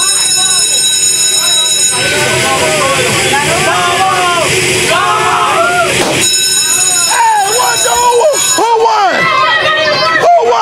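Carnival water-gun race game running: a steady high electronic buzzing tone that breaks off about two seconds in and sounds again from about six to eight and a half seconds. Children shout and cheer throughout.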